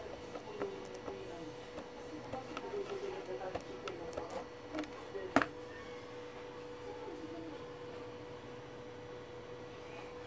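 Screwdriver tip scraping burnt carbon, left by electrical arcing, off a TV power-supply circuit board beside a transformer pin: light scratches and small clicks for about five seconds, ending with one sharper click, over a faint steady hum.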